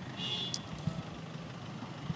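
Low outdoor background of vehicle traffic with no speech. A brief high-pitched tone comes in about a quarter second in.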